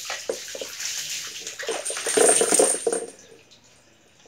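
Water poured from a plastic dipper over a dog's back, splashing onto its coat and the wet floor while a hand rubs the wet fur. The splashing is loudest about two seconds in and dies away shortly before the end.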